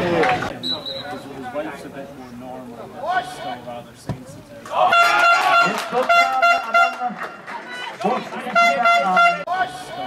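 Voices of players and spectators calling out on a football pitch, then a fan's horn blown in long, steady blasts about halfway through and again near the end, louder than the voices.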